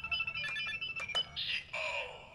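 Electronic beeps from a Kamen Rider Zi-O toy transformation belt and Ride Watch: a quick run of short, high chime tones, with a few sharp plastic clicks as the watch is handled and set into the belt.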